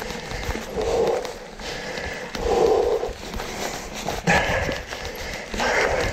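A mountain-bike rider breathing hard while climbing a rooty singletrack, one heavy exhalation about every second and a half, over the rumble of the bike. A sharp knock about four seconds in.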